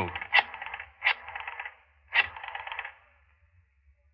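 Sound effect of a rotary telephone being dialled: three sharp clicks, each followed by the quick clicking run of the dial springing back.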